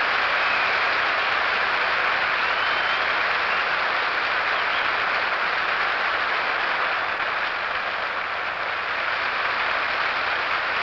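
Studio audience applauding steadily after a big-band number, easing slightly near the end.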